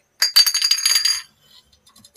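TikTok Live gift alert sound effect: a brief jingle of rapid clicks over two high ringing tones, about a second long.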